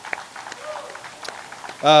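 Scattered applause from an audience, light patter of clapping hands that carries on under the speaker's voice near the end.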